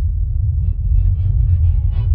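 Deep, heavy rumble of a blast sound effect, swelling over the first second and then holding steady, with faint musical tones building over it.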